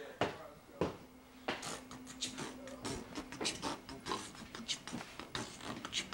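Irregular clicks and knocks of a handheld camera being carried through the house, with faint voices in the background and a steady low hum for about two seconds in the first half.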